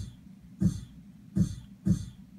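Eurorack ER-301 sound computer's sample player being triggered to play a short one-shot slice of recorded audio. Three short hits, each a low thump with a hiss on top, while a new slice is being auditioned for a drum part.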